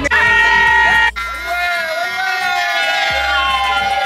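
A group of voices shouting and singing long held notes over loud music with a steady bass. The sound breaks off abruptly about a second in and resumes.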